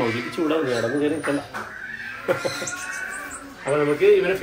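A man's voice talking in a wavering tone, and a red-handed tamarin giving a few short, thin, high-pitched chirps, one about a second in and a quick cluster of three about two and a half seconds in.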